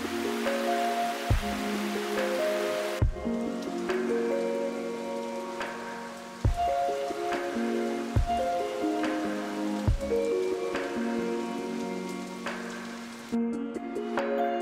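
Rain falling hard on a lake surface, an even hiss that cuts away about three seconds in, under background music of slow held notes with a soft low beat about every second and a half.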